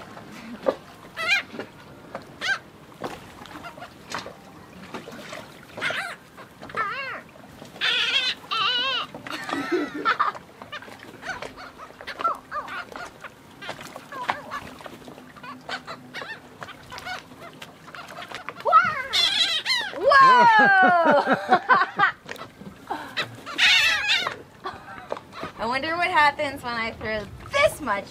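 A flock of gulls calling as they squabble over thrown food, with short squawks throughout and a burst of many falling calls together about twenty seconds in.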